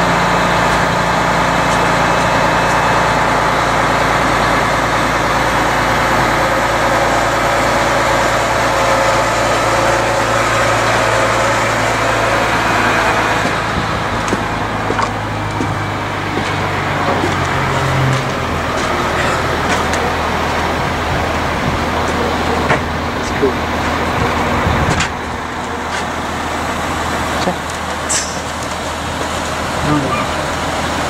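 Mobile crane's diesel engine running steadily while it lifts a load, its pitch shifting about halfway through, with a few short clicks and knocks near the end.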